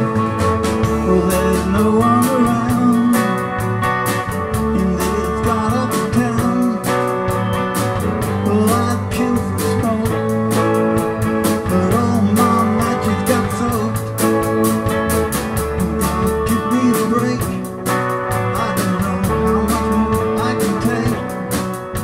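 Live band playing a guitar-led pop-rock song: electric lead and rhythm guitars over bass guitar and a drum kit, amplified through PA speakers.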